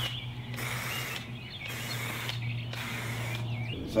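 Marking paint sprayed from an aerosol can in short hissing bursts, about four in a row with brief gaps between.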